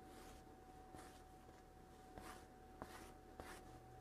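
Near silence: a few faint, soft strokes of a rubber rib smoothing a slab of clay, over a faint steady tone.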